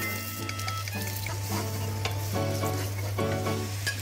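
Food sizzling in a frying pan as a metal spatula stirs and scrapes through it, with a steady low hum underneath.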